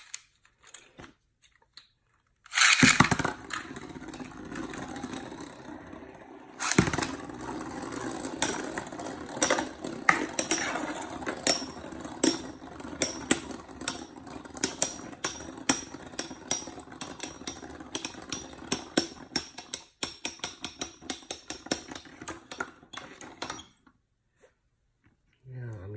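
Beyblade spinning tops launched into a clear plastic stadium about three seconds in, spinning with a steady whir and knocking together in rapid clicks that come faster toward the end. Everything stops shortly before the end as the tops come to rest.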